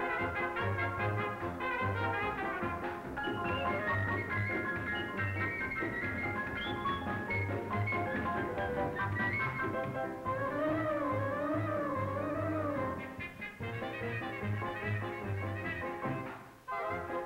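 Brassy orchestral cartoon music over a steady bass beat. A little past the middle, a wavering, wobbling melody line plays for a few seconds.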